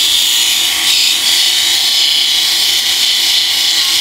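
Corded electric epilator running against the skin of a leg, pulling out hairs, with a steady high-pitched buzz.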